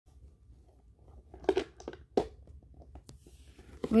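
A few short crackling clicks and rustles from a zippered Boggle game case being handled and opened by small hands.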